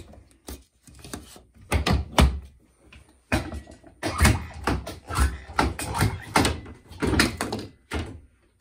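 An underpinning machine joining the corners of a wooden frame: a series of sharp thunks and clacks, thickest in the second half. The wooden frame knocks against the bench as it is handled.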